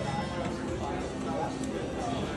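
Casino floor ambience: a murmur of voices with steady electronic slot-machine tones and music.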